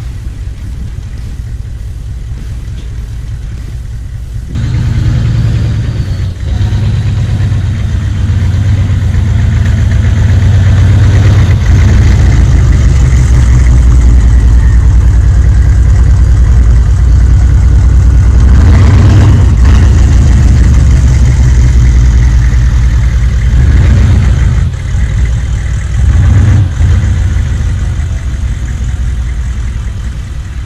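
A full-size SUV's engine running close by, coming in suddenly about four and a half seconds in with a deep rumble, then swelling and easing a few times as it is driven and revved, dropping back near the end.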